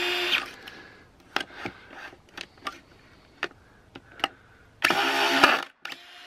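DeWalt cordless drill/driver with a collated screw-feed attachment driving screws into pallet wood: two short bursts of motor whir, one at the start and one about five seconds in, with a few sharp clicks in between.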